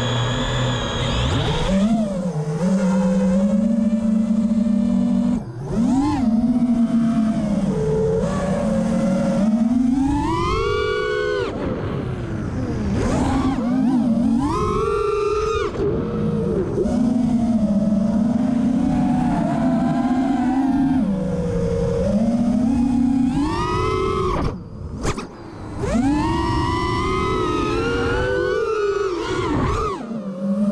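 Brushless motors and propellers of a freestyle FPV quad (Cobra 2207 2450kv motors) whining in flight, heard from its onboard camera. The pitch rises and falls sharply as the throttle is punched and eased. The whine dips briefly about five seconds in and again near 25 seconds.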